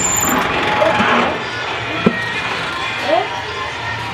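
Busy background noise of a crowded apartment block with distant, indistinct voices, and one sharp knock about two seconds in.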